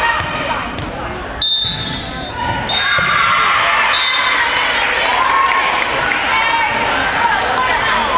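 A referee's whistle sounds about a second and a half in, with two shorter tones after. A volleyball is then served and played, with sharp ball hits over a steady hubbub of spectators' voices in a gym.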